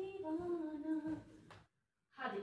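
A person humming a short tune, a held note stepping down in pitch and fading out about a second and a half in, followed by a faint click.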